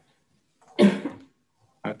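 A single short cough from a person, about a second in.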